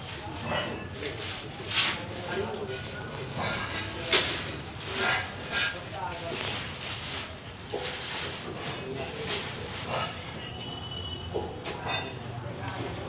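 Indistinct voices talking in the background over a low steady hum, with a sharp knock about four seconds in.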